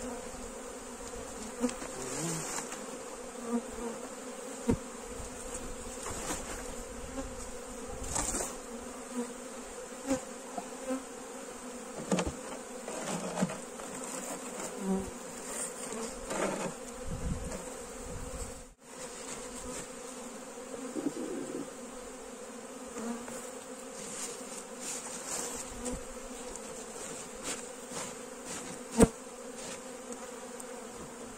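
Honeybees buzzing around an opened hive in a steady hum. Scattered knocks and rustles come from hive boxes and covers being handled, with one sharp knock near the end.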